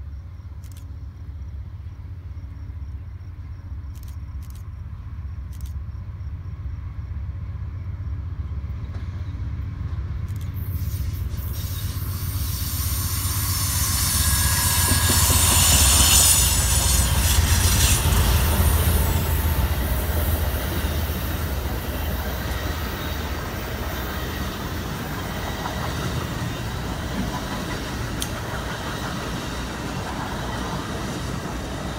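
Amtrak California Zephyr passenger train approaching and passing close by: its diesel locomotives' rumble grows steadily louder to a peak about halfway through as the engines go past, followed by the steady rolling of the passenger cars over the rails.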